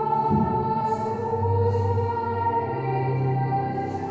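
A group of voices singing a hymn, with long held notes that step from one pitch to the next.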